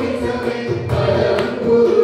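Carnatic kriti sung in unison by a group of male and female voices, accompanied by violin and mridangam, with drum strokes scattered through the singing.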